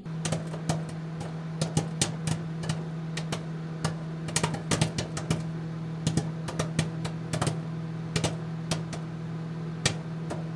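A steady low hum with irregular sharp clicks and crackles scattered through it.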